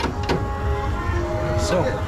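Roller coaster lap bar restraint being pushed down and latched, a few short clicks over a steady low rumble.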